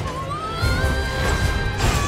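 Film trailer score with a tone that rises and then holds over a heavy low rumble, and a sharp crash-like hit near the end.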